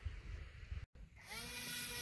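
Small electric motor of a capacitor-powered model glider spinning its propeller up about a second in: a whine that rises briefly and then holds steady.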